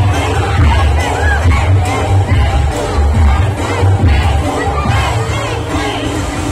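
A large crowd shouting and cheering over loud amplified dance music with a heavy, pulsing bass beat.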